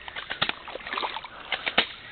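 Bare feet wading through shallow creek water: several splashing, sloshing steps.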